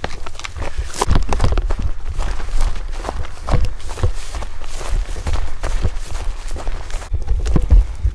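Footsteps moving quickly through dry grass and brush, with irregular scrapes and rustles as the brush drags past, over a heavy low rumble on the microphone.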